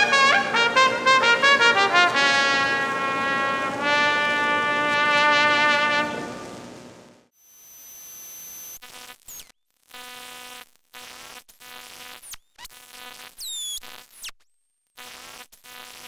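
Brass quintet music playing quick runs and ending on a held chord that fades out about seven seconds in. Then a stuttering electronic buzz, cut on and off in short chunks, with a few high falling zips.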